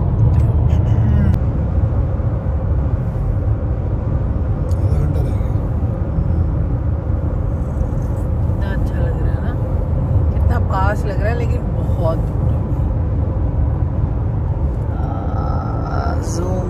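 Steady low road and engine rumble inside the cabin of a Honda car moving at highway speed, with a brief voice about ten seconds in.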